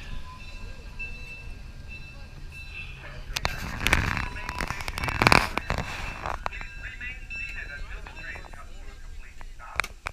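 Washington Park and Zoo Railway train rolling along the track with a steady low rumble, then a few seconds of sharp clanks and knocks in the middle, loudest twice; passengers' voices follow.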